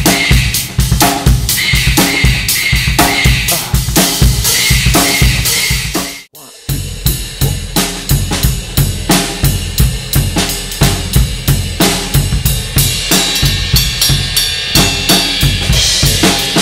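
Acoustic drum kit played in a busy groove, with bass drum, snare and cymbals. The playing stops briefly about six seconds in, then starts again.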